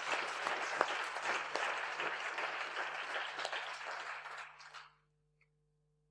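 Audience applauding, dying away and stopping about five seconds in.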